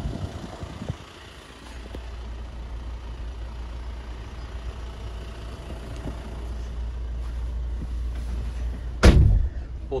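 A van door shutting about a second in, then a steady low rumble inside the cab, with a loud thump near the end.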